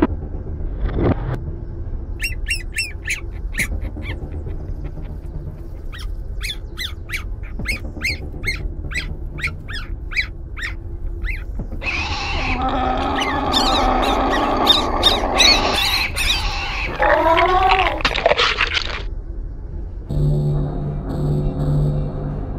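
Dark film soundtrack: a low ambient drone under a string of short, high bird-like chirps, then a louder stretch of dense warbling, gliding cries from about halfway through until a few seconds before the end.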